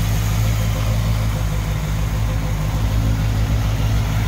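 Chevrolet 348 big-block V8 with tri-power carburetors idling steadily, heard close over the open engine bay.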